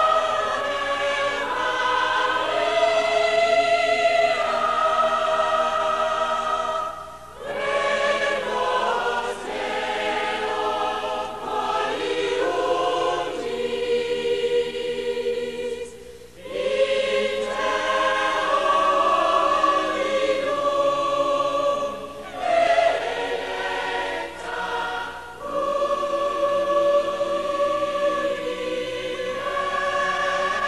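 Several voices singing together in long, held phrases, with short breaks between phrases about seven and sixteen seconds in.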